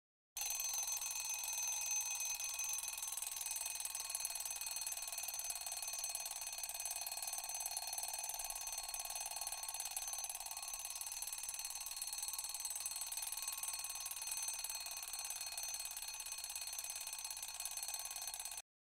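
Homemade electric bell buzzing steadily: a coil-on-bolt electromagnet pulls the iron-tipped lever, which breaks its own contact and springs back again and again, rattling against a metal bottle-cap gong. It starts a moment after being switched on and keeps going without a break.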